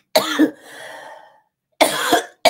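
A woman coughing: a sharp cough a moment in that trails off into a breathy exhale, then another cough starting near the end.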